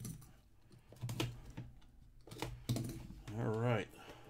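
A cardboard trading-card box being handled and pried open by hand: a scattered series of light clicks and taps. Near the end comes a short wavering hum or murmur from a person's voice.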